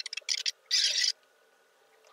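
Fast typing on a laptop keyboard: quick flurries of key clicks in the first second, the densest just before a second in, then a pause.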